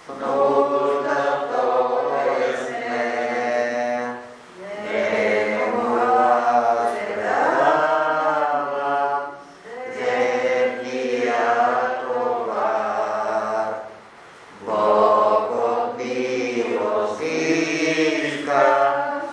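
Slow, chant-like hymn singing by voices in long held phrases, with a brief pause about every five seconds.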